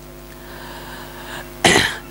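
A pause over a faint steady hum, then a single short cough from the man at the microphone near the end.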